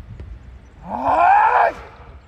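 A shot putter's loud, drawn-out yell, about a second long, its pitch rising and then falling away, let out just after a throw. It comes in a training session that left him very angry at missing his goal.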